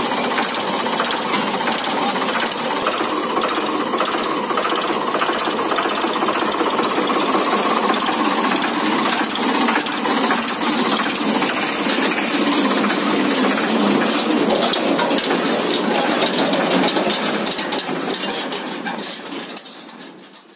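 Ford 3600 tractor's three-cylinder diesel engine idling close up with a steady, rapid clatter. The sound fades out near the end.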